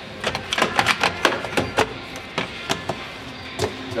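Plastic clicks and clacks as the lower lint filter cassette of a heat-pump tumble dryer is handled in its compartment: a quick irregular run of sharp knocks over the first three seconds, and a few more near the end.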